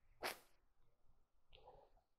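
Near silence: room tone, broken about a quarter second in by one short hissy noise, with a fainter brief rustle near the end.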